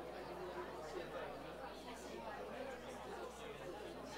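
Indistinct chatter of many people talking at once in a meeting room, no single voice standing out.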